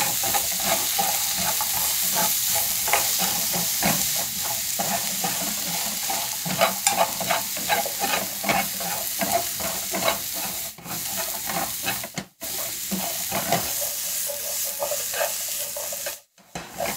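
Vegetables sizzling in a non-stick frying pan as they are stir-fried with wooden chopsticks: a steady hiss with frequent light clicks and taps of chopsticks and vegetables against the pan. The sound cuts out briefly twice, a little after ten seconds and again around twelve seconds.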